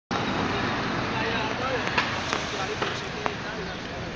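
City street ambience: indistinct voices of people nearby over a steady hum of traffic, with a few sharp clicks in the middle.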